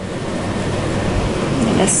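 Steady rushing background noise with no distinct events, at a fairly high level.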